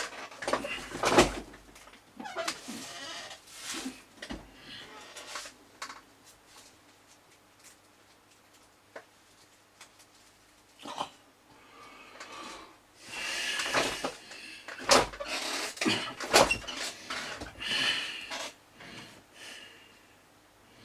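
Small parts of a model locomotive being handled and fitted on a workbench: scattered clicks, knocks and scrapes, the sharpest about a second in and twice near 15 and 16 seconds, with a few longer, higher-pitched sounds around 13 and 17 seconds in.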